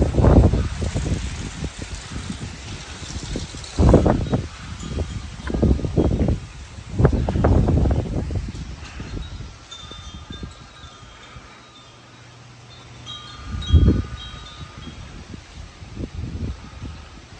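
Wind buffeting the microphone in several strong gusts. In the second half, a few faint high ringing tones are held at two or three pitches.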